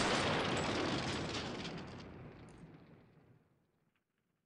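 Explosion-like boom sound effect: a loud rush of noise with a deep rumble, fading out over about three seconds.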